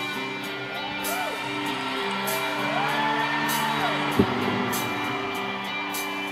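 Live band holding sustained keyboard chords in an instrumental segue, with audience whoops rising and falling over it. A short thump about four seconds in is the loudest moment.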